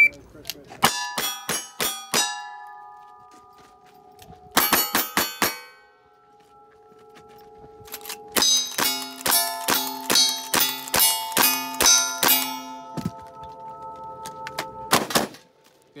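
A shot-timer beep, then strings of gunshots, each hit answered by the ringing clang of steel plate targets: a few shots in the first two seconds, a short cluster around five seconds in, a rapid string of about ten rifle shots from about eight seconds in, and a couple more near the end.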